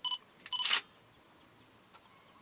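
A camera beeping twice, about half a second apart, followed right after the second beep by a brief shutter click.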